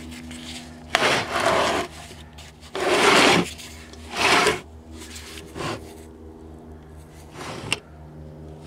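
Several short bursts of rubbing and scraping as the painted wooden cabinet of an old tube radio is handled, over a steady low hum.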